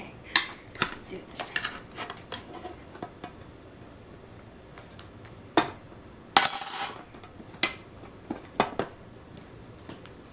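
Light clinks and knocks of a knife and mitted hands against a glass baking dish upturned on an aluminium sheet pan, with a louder scraping rattle about six and a half seconds in and a few more knocks after it. This is the upside-down cake being worked loose from its dish after the flip.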